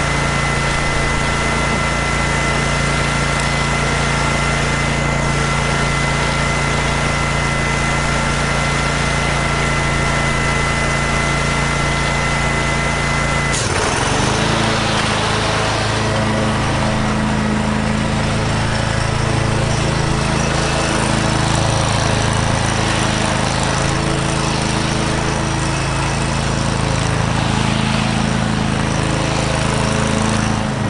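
Engine of a red walk-behind commercial lawn mower running steadily. About halfway through, its sound changes suddenly: the pitch dips briefly, then settles into a new steady note.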